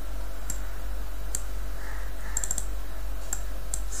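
Computer mouse clicks, single ones scattered through and a quick run of several about halfway through, over a steady low electrical hum.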